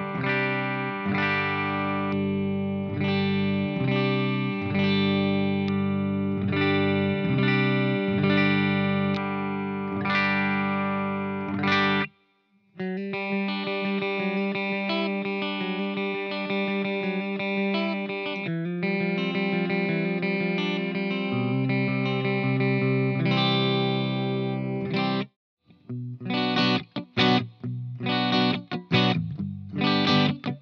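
Electric guitar played clean through a Hughes & Kettner Black Spirit 200 amp's clean channel. For about the first twelve seconds it is the Ibanez Artcore AS73FM hollow body on its bridge pickup. After a brief break it is the Ibanez GRG121SP on both pickups, and the playing turns choppy with short stops near the end.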